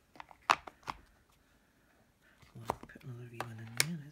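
A few sharp plastic clicks and taps as stamping supplies are picked up and handled on the craft desk, the loudest two in the first second. In the second half a person hums a long, steady 'mmm' while working.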